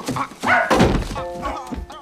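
A few dull thuds in the first second, like a body bumping into something, followed by a held music chord that comes in near the end.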